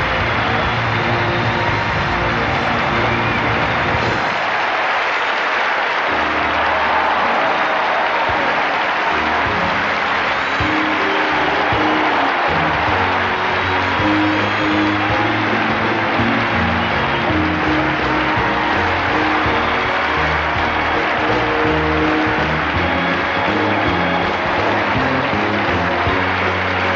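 Congregation clapping and shouting over live church music, with held low chords from the band changing underneath. The low chords drop out briefly about four seconds in, then return.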